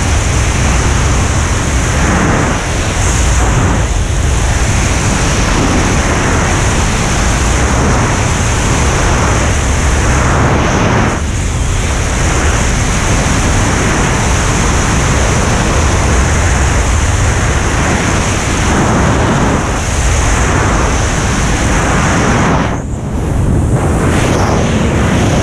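Freefall airflow blasting over a helmet camera's microphone: a loud, steady rush of wind noise that eases briefly near the end.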